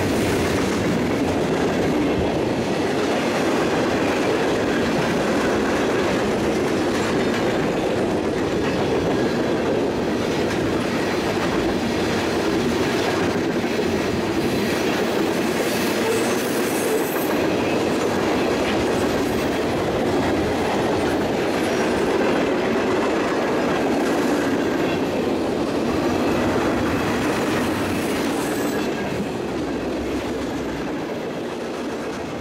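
Freight cars of a long mixed freight train rolling past on steel wheels: a steady rumble with clickety-clack over the rail joints and a few faint high wheel squeals. The sound eases a little near the end as the tail of the train approaches.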